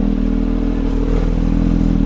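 Porsche 911 GT3 RS's 4.0-litre flat-six idling steadily.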